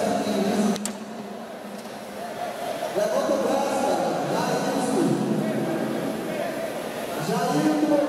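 Voices of onlookers chattering in a large echoing hall, with one sharp click of a pool shot about a second in.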